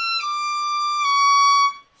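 Violin playing three high, slow, connected notes that step downward, a whole step and then a half step. The notes are played as a shifting demonstration, with the last note held until it stops sharply near the end.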